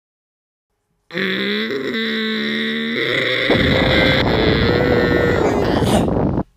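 Cartoon sound effect of a heavy stone being shifted: after a silent second, a loud held straining tone, then from about three and a half seconds a low rumble as the boulder rolls aside from the cave mouth.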